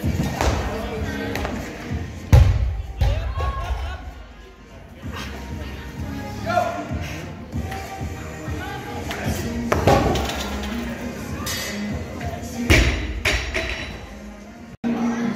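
Loaded barbell with 98 kg of rubber bumper plates thudding through a clean and jerk: a heavy thump about two seconds in, another near ten seconds, and a loud crash near the end as the bar is dropped to the platform. Gym music and voices run underneath.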